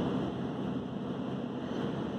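Steady road and engine noise inside the cabin of a 2015 Sprinter van with a four-cylinder diesel engine, driving along.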